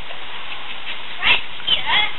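A young child's voice gives two short high-pitched cries, one about a second in and a falling one near the end, over a steady background hiss.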